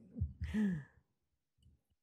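A person's breathy sigh with a falling pitch, trailing off after laughter, followed by about a second of near silence.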